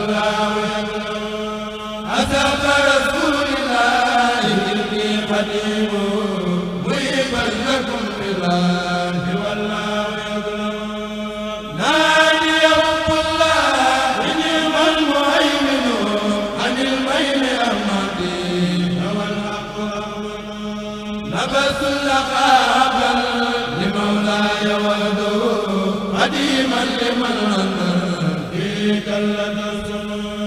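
Men chanting an Arabic devotional poem through microphones: a moving sung melody over a long held low note, with new verses starting about 2, 12 and 21 seconds in.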